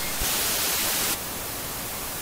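Television static hiss, with a louder, brighter surge of hiss from just after the start until about a second in.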